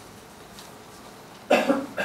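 A loud cough about one and a half seconds in, two quick hacks close together, after a stretch of quiet room tone.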